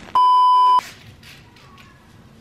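A single loud electronic beep, one steady tone lasting well under a second, inserted as a sound effect at an edit cut. Faint room noise follows.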